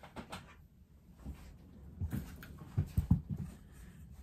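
Handling noise from pinning fabric: light rustling of cloth and small clicks of dressmaking pins being picked from a pin dish, with a few sharper knocks about two to three seconds in.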